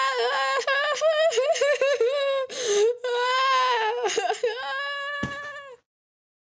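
A person screaming a long, high-pitched, wavering "aaah" over several breaths: an acted scream recorded as a voice-over take. A sharp click comes near the end, just before it stops.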